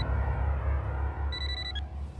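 Mobile phone ringing: one short electronic ring a little past the middle, over a steady low rumble.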